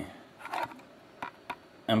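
Two light, sharp clicks about a quarter second apart, from a hand handling small cylindrical magnets and a thin stick on a board.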